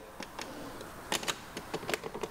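Plastic handlebar cover of a Vespa GTS being pressed and flexed into place by hand: a few sharp clicks and taps of plastic.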